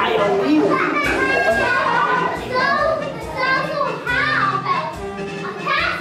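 Many young children's voices at once, talking and calling out over one another.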